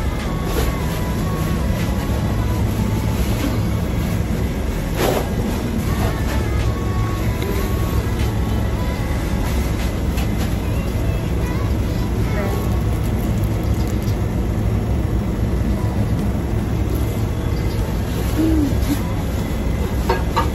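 A steady low mechanical rumble, even in level throughout, like heavy machinery or a motor running close by.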